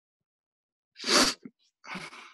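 A person sneezing once, loud and short, about a second in, followed by a fainter breathy sound near the end.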